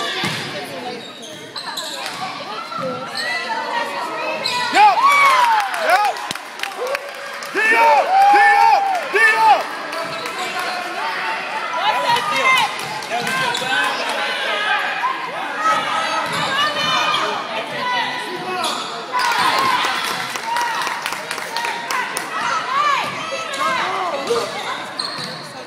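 A basketball dribbling and bouncing on a hardwood gym floor during game play, with sneakers squeaking, all echoing in a large gym. Short high squeals come in clusters about five to nine seconds in and again later, with scattered voices from players and spectators.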